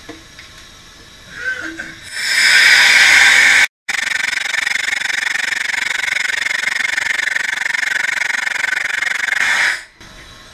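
Loud rushing hiss of air venting from a hyperbaric chamber as it is decompressed, the divers ascending from 12 to 9 metres. It starts about two seconds in, breaks off for an instant a little later, then runs on evenly and cuts off just before the end.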